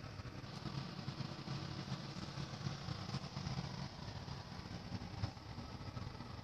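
Steady low hum and hiss from a gas stove with pots steaming on its lit burners, with a few faint clicks.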